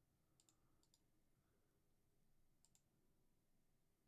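Near silence, with a few very faint computer mouse clicks: two pairs of press-and-release clicks within the first second and one more later.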